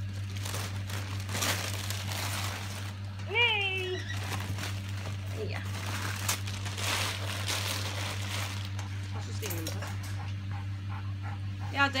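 Gift-wrapping paper crinkling and rustling in irregular bursts as dogs nose and tug at a wrapped plush toy. A short high whine rises and falls about three and a half seconds in.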